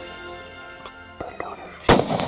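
Background music, then near the end a single loud rifle shot from a Savage .270 hunting rifle fired at a whitetail doe.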